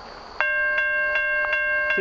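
Level-crossing warning bell starting up suddenly less than half a second in and ringing with an even stroke, about two and a half strikes a second. It is the crossing signal activating for an approaching train.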